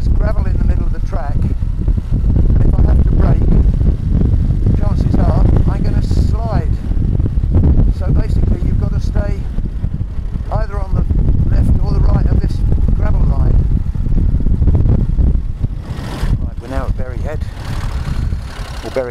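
Motorcycle riding along, its engine heard under a heavy, steady rumble of wind noise on the rider's external microphone with the helmet visor open.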